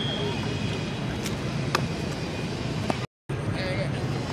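Open-air football pitch ambience: players' distant voices and shouts over a steady background hum, with the last of a referee's kickoff whistle fading out at the start. A few sharp ball kicks come in the middle, and the sound cuts out briefly near the end.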